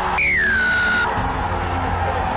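Background music, with a loud whistle-like tone near the start that falls in pitch for just under a second and cuts off sharply.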